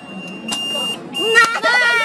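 Buzz-wire game's electronic buzzer giving a steady high tone, once briefly about half a second in and again from near the middle: the sign that the ring has touched the wire. A voice cries out over the second buzz.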